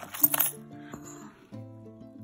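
A short crinkle of bubble wrap and clink of coins in the first half second as a hand digs into a bag of coins, then quieter background music with sustained notes.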